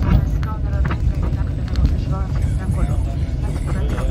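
Steady low rumble of an airliner rolling down the runway, heard inside the cabin, with passengers' voices talking over it.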